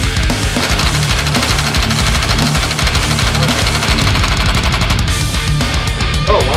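Loud background rock music with a steady, hard-driving beat.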